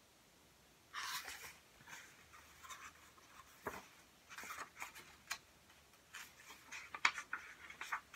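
Faint rustling and scraping of paper as the pages of a hardcover picture book are handled and turned, with a few light taps and clicks.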